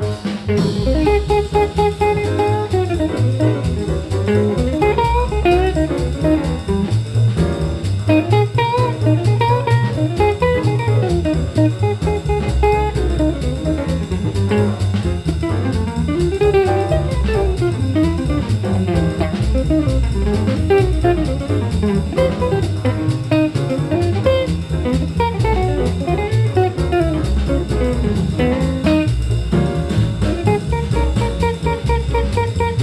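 Jazz small-group recording: a guitar plays a solo of quick single-note runs over drum kit accompaniment.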